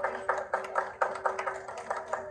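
A small group clapping, with many quick, uneven claps.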